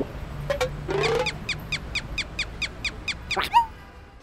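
Cartoon squeaks and chirps: a short rising squeak, then a quick even run of about a dozen short falling chirps, about six a second. A louder click and one more squeak come near the end.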